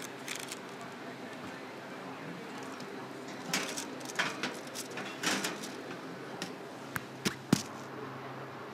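Knocks and clatter from a countertop electric oven as a baking pan is loaded in, then three sharp clicks close together near the end.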